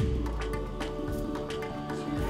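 Instrumental music with held tones and repeated percussion hits starting up: the opening of a children's Vacation Bible School song.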